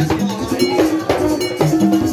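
Haitian Vodou ceremonial drumming: hand drums played with a metal bell struck in a steady repeating pattern that carries the rhythm.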